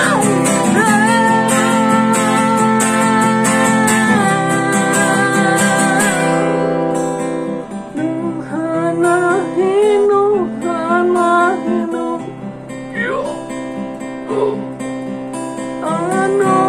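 Acoustic guitar strummed in full chords with a man singing over it. The strumming is dense for the first six seconds or so, then turns softer and sparser under long, wavering sung notes.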